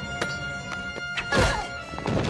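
Film fight soundtrack: held music tones under a quick series of sharp hit sound effects, blows landing, the loudest about one and a half seconds in.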